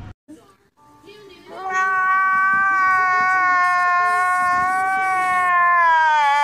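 A man's long, high wailing cry, starting about a second and a half in and held on one pitch, sagging slightly near the end.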